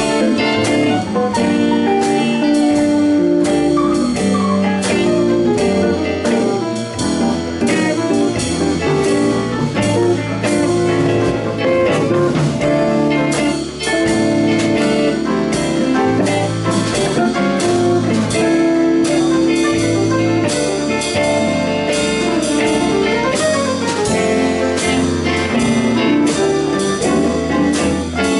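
Live band playing: electric guitars and bass guitar over a drum kit, with a steady beat.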